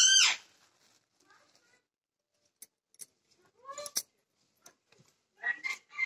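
A thin plastic bag being handled, giving a few separate faint crackles, with one short vocal sound about four seconds in.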